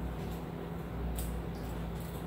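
Steady low room hum with faint background noise, and a single faint click a little over a second in.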